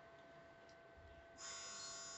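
Near silence, then a steady high-pitched electrical buzz starts suddenly about one and a half seconds in.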